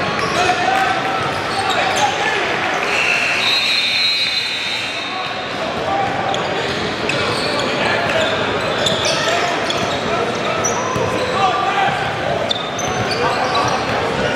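Basketball game sounds in a gym: a ball bouncing on a hardwood court amid a steady murmur of crowd voices, echoing in the large hall.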